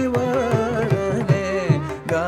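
Carnatic classical music in raga Saranga and khanda chapu tala. A melodic line bends through ornamented glides over a steady drone, and hand-drum strokes keep a regular rhythm underneath.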